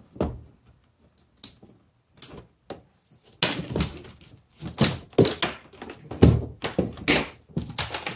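Plastic mounting board carrying a PWM motor controller and wiring being pulled out through a kayak's hatch: a run of irregular knocks, clicks and rattles of plastic and wire against the hull, sparse at first and busier in the second half.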